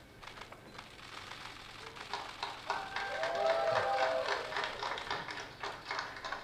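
Rapid, irregular camera shutter clicks from several press cameras. About halfway through, a few held steady tones join them and grow louder.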